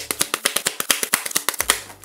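A deck of Kipper cards being riffled and shuffled by hand: a fast run of crisp card clicks that stops about a second and a half in.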